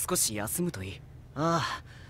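Speech only: anime characters speaking in Japanese, a short phrase followed by a brief utterance.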